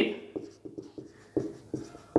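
Marker pen writing on a whiteboard: a quick series of short strokes and light taps as letters are drawn.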